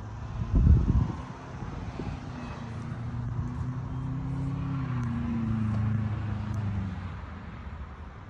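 A vehicle engine passing at low speed: a steady hum that grows louder, then dips slightly in pitch and fades near the end. A brief low rumble, loudest of all, comes just under a second in.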